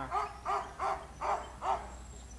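A dog barking five times in quick succession, about three barks a second.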